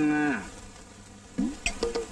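A long, moo-like vocal call that rises and then falls in pitch, ending about half a second in. After a short lull, rhythmic music with clicking percussion and plucked-sounding notes starts near the end.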